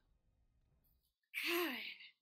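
About a second of near silence, then a person's breathy sigh with a slight falling pitch over the last half second or so.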